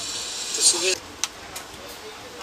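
A steady high hiss that cuts off suddenly about a second in, with a brief voice sound just before it stops, followed by a sharp click of a computer keyboard key and a couple of fainter key clicks.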